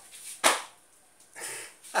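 A man bursting into laughter: one sharp, breathy burst about half a second in, a softer breath, then quick bursts of laughter starting near the end.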